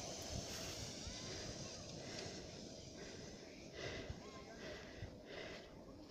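Faint outdoor ambience on a snowy sledding hill: a low, even rustle with a few faint, distant children's calls.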